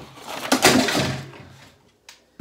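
A ring light falling over and crashing down: a loud clatter about half a second in that dies away over about a second.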